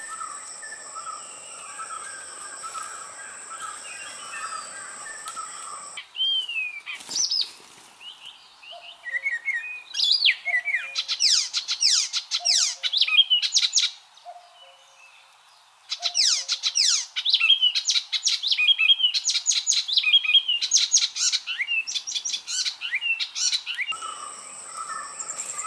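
For about the first six seconds, a steady high insect drone. Then birds call, and from about ten seconds in there are long runs of rapid chirping song, with a short lull near the middle.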